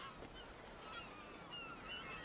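Faint bird calls, short chirping glides scattered through a quiet background ambience.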